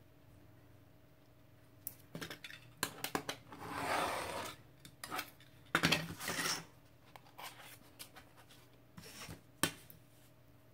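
A snap-off craft knife slicing through paper along a steel ruler for about a second near the middle, surrounded by clicks and knocks of the metal ruler, knife and paper being handled on a wooden table.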